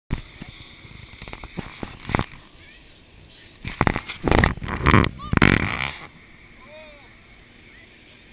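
Wind buffeting and handling knocks on an action camera's microphone, loudest in heavy bursts from about four to six seconds in. Near the end come a few short, falling calls of gulls.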